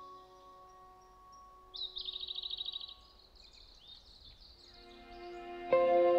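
Small songbird singing: a rapid high trill of about a dozen notes a second around two seconds in, then scattered shorter chirps, over the fading held notes of a keyboard. Near the end a soft pad swells and a loud keyboard chord comes in, starting the next song.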